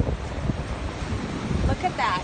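Wind buffeting the microphone: a steady, unpitched rumble of noise, with a brief snatch of voice near the end.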